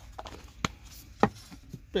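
Two sharp knocks about half a second apart, the second the louder: seasoning pots being handled and set down on a wooden table while a steak is peppered and salted.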